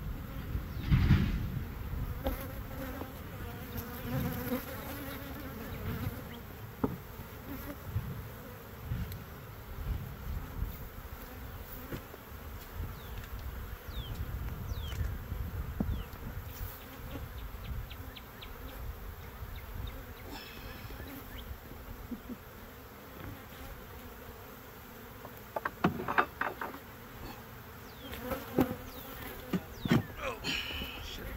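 Honeybees buzzing around an open hive, a steady drone with single bees passing close by now and then. Wooden knocks from the hive boxes and frames being handled come about a second in and again in a cluster near the end.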